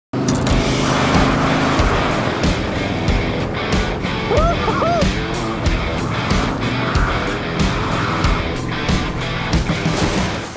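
Race car engines running hard on a dirt oval, mixed with driving trailer music with a steady beat, starting suddenly at full level. A few short rising-and-falling squeals come about four and a half seconds in.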